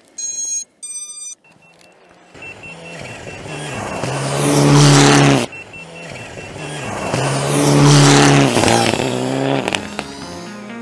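Two short series of electronic beeps from an FPV drone as its battery is connected, then a rally car's engine revving hard twice, each time climbing to a loud peak and cutting off sharply.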